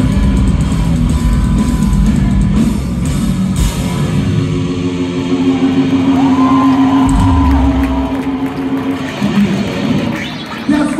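Hardcore punk band playing live: distorted electric guitars and drum kit, settling about halfway through into one long sustained ringing guitar note as the song ends.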